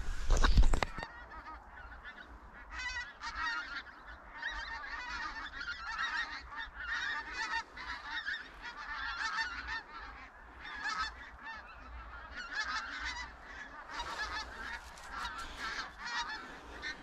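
A large skein of pink-footed geese flying over, many birds calling at once in a continuous overlapping chatter of short high calls that thickens from a few seconds in. A brief low rumble of handling noise on the microphone comes right at the start.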